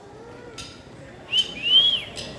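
A person whistling two rising-and-falling notes over a low background murmur. The first is short and comes about a second and a quarter in; the second is longer, higher and louder.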